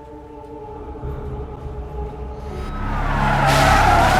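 A car braking hard and skidding to a stop, its tyres squealing with a falling pitch, building over the last second and a half to the loudest point at the end.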